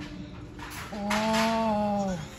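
Sound of a video's soundtrack played through laptop speakers: a single held pitched tone or cry lasting about a second, starting about a second in, wavering slightly and sliding down in pitch as it ends.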